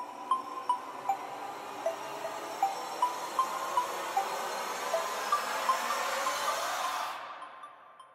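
Intro of a downtempo lofi instrumental: short chime-like notes picked out two or three times a second over a swelling hiss-like wash. The wash fades away about seven seconds in, leaving a brief gap.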